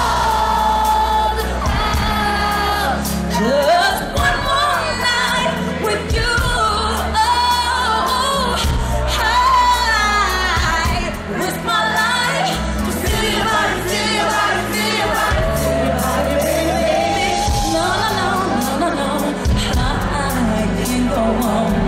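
A woman singing a slow pop ballad live into a microphone with band accompaniment: held notes and wavering vocal runs over sustained bass chords.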